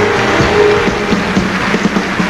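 Band music playing under loud applause and cheering from a large audience giving a standing ovation.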